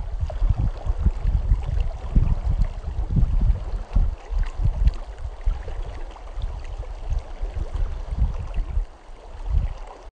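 A fast-flowing stream rushing along, with gusts of wind buffeting the microphone that are louder than the water. It drops away near the end.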